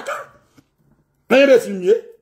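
A man's loud, drawn-out wordless vocal exclamation, rising and falling in pitch, about a second and a half in, after a brief pause in his talk.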